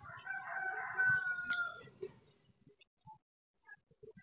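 A faint, distant bird call: one long pitched call of under two seconds near the start, with a single click about one and a half seconds in.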